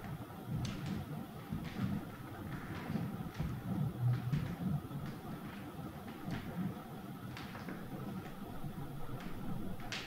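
Footsteps on a wooden parquet floor, faint clicks at an irregular walking pace, over a low murmur of distant voices.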